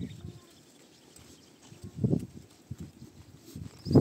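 A flock of sheep walking close together on a dirt track: scattered hoof steps and shuffling, with a short low animal sound about two seconds in and a louder one starting at the very end.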